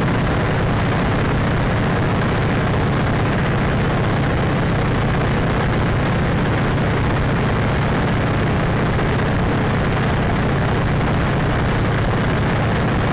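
Open-cockpit biplane in level flight: the engine and propeller run steadily at cruise with a deep, even drone, mixed with the rush of wind through the open cockpit.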